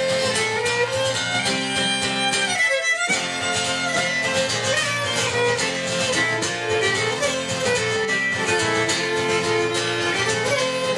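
Fiddle playing a Celtic tune over acoustic guitar accompaniment, performed live.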